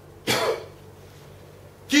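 A man's single short throat-clearing cough.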